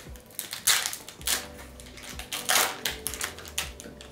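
A Yu-Gi-Oh booster pack's foil wrapper being torn open and crinkled by hand, in irregular crackles. The loudest come about two thirds of a second in and again around two and a half seconds.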